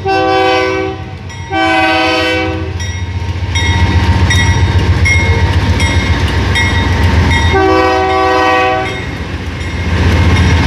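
A KCSM diesel freight locomotive sounding its multi-chime air horn as it passes close by: a blast at the very start, a longer one at about a second and a half, and another near the eight-second mark. Between the blasts, the deep rumble of the diesel engines and the train's wheels on the rails fill in and get louder as the locomotives go by.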